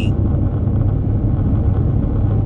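Steady low rumble of road and engine noise heard inside a car's cabin while driving at highway speed.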